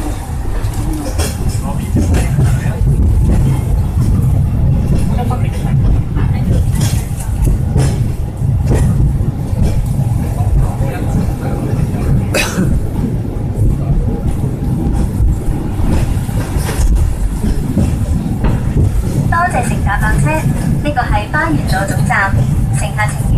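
Hong Kong Peak Tram funicular car running on its rails, heard from inside the passenger cabin: a steady low rumble with scattered clicks and a sharp knock about halfway through. Passengers' voices are mixed in.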